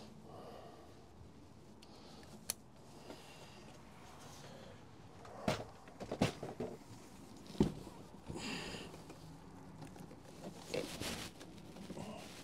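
Scattered clicks, knocks and rustling from hands working inside a truck door, on the window regulator, its wiring and the door trim panel. The loudest knocks come a little past halfway through.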